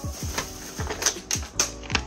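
Background music with a beat of deep kick drums that fall in pitch, over sharp clicking percussion.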